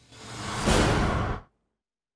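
Whoosh sound effect of a TV news transition graphic. It swells over the first half second or so, holds, then cuts off about a second and a half in.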